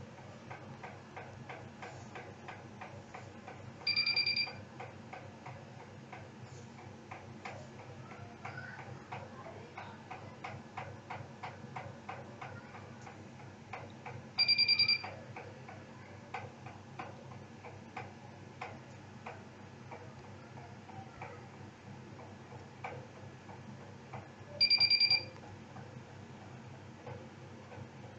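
Steady, regular ticking, about three ticks a second, over a low hum, broken by three identical short electronic beeps about ten seconds apart, each a two-pitch tone lasting about half a second and louder than everything else.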